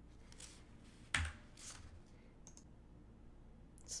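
A sharp computer key click with a light thump about a second in, then a softer rustle and a faint tick, over quiet room tone: a key press at the computer as the presentation slide is advanced.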